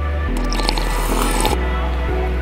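Background music with a steady bass line that changes note twice. About a third of a second in, a wet liquid sound lasting about a second rises over it, from iced coffee being sipped from a glass.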